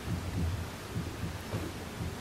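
Soft, dull footsteps of small children shuffling about on a wooden stage floor, a few irregular low thumps a second over faint hall hiss.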